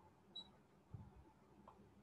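Near silence: faint room tone, with a brief high blip early on and a soft low thump about a second in.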